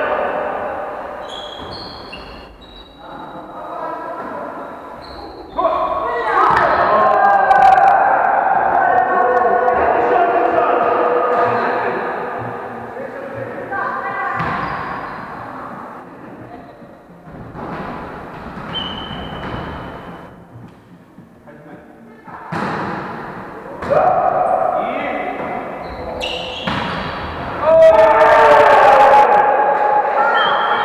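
Volleyball being played in a large echoing gym: several sharp ball hits ring out among players' shouting and calling out. Near the end someone lets out a long "ahhh" followed by laughter.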